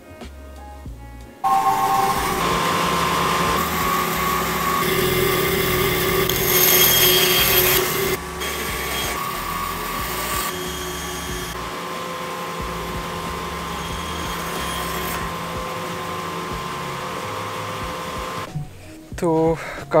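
A band saw and its dust-extraction suction start suddenly about a second and a half in and run steadily, with the blade cutting small wood blocks; the noise is loudest for a few seconds around the middle, then settles and stops shortly before the end. Background music plays underneath.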